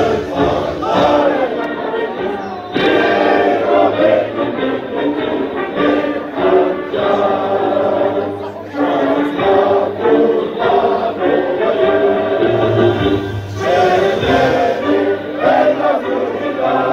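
Many voices singing a Turkish march together over music.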